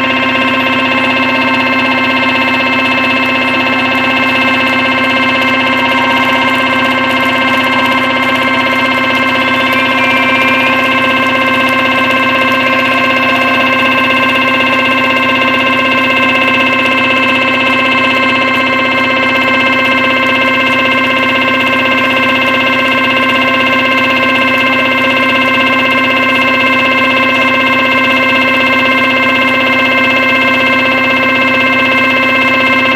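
Loud live rock concert music: the band holds one long, steady drone chord with no beat.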